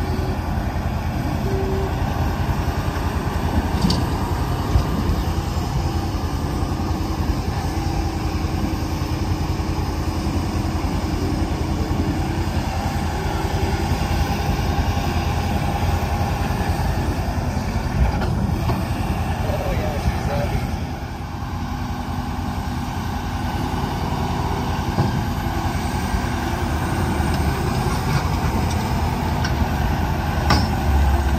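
Case IH 620 Quadtrac's diesel engine running steadily at high throttle under heavy load, pulling a 20-yard drainage scraper through mud. It dips slightly about two-thirds of the way through.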